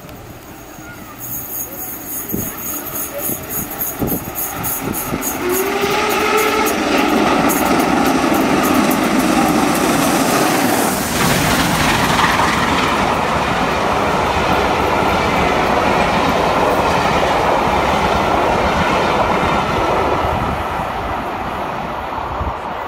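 LMS Royal Scot class three-cylinder 4-6-0 steam locomotive No. 46100 and its train of coaches passing through a station. The sound grows over the first six seconds, is loudest as the engine and coaches go by, and fades slightly near the end as the train runs away.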